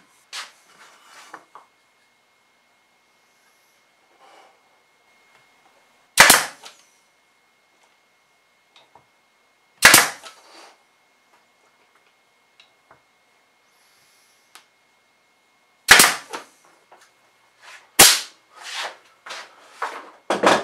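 Pneumatic nailer firing nails through a thin luan drawer bottom into the drawer's sides: four sharp shots several seconds apart, the last followed by a few lighter knocks.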